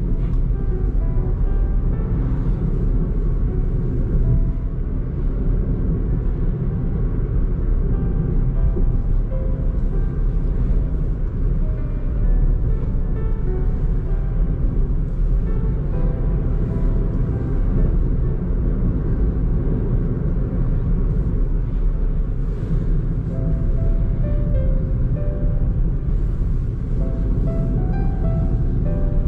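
Background music, a melody of short held notes, over a steady low rumble of road and engine noise inside a moving Suzuki Alto's cabin.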